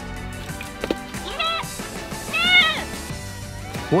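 Goat bleating twice, two short calls about a second apart, over background music.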